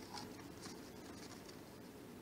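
Faint, irregular scratching and scrabbling from a pet rat on a carved wooden floor: a few short, dry rasps in the first second and a half.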